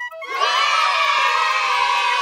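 A crowd of children cheering and shouting, breaking in abruptly just as a flute melody ends and staying loud.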